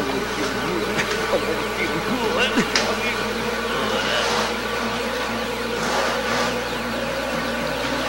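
A steady buzzing drone with wavering, gliding tones over it.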